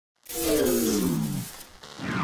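Logo intro sound effect: a sudden pitched sound with a hiss over it, sliding steadily down in pitch for about a second and then fading.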